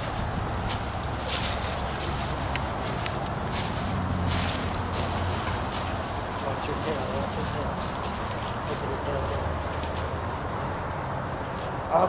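Dry, tangled vines and brush crackling and rustling as a dog and a person push through them, with scattered sharp snaps over a faint steady low hum.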